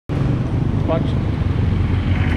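Street traffic, with vehicle engines and motorcycles running nearby, heard as a steady low noise.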